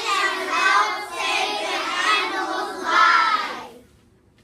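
A class of young children's voices together in unison, with a loud swell near the end before they cut off suddenly.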